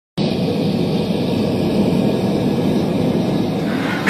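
Gas-fired rivet furnace burning with a steady, low roar. A brighter, higher rasp comes in just before the end.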